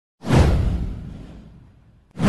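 A whoosh sound effect with a deep boom beneath it. It starts suddenly, then falls in pitch as it fades away over about a second and a half.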